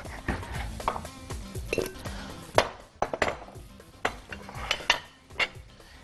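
Glass bowls and kitchen utensils clinking and knocking on a counter while raw chicken drumsticks are moved into a wider bowl: about seven irregular clinks and knocks, over soft background music.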